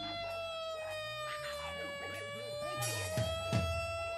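A live rock band holds one long sustained note that sags slightly in pitch through the middle and comes back up, with a few light drum hits underneath.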